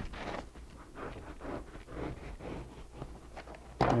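Butcher knife sawing through molded open-cell polyurethane foam with an integral skin: a run of quiet scraping strokes, about two a second.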